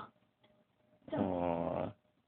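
Blue and gold macaw giving one drawn-out call, lasting under a second, about a second in.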